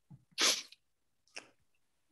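A short, sharp burst of breath from a person about half a second in, with a much fainter puff about a second later.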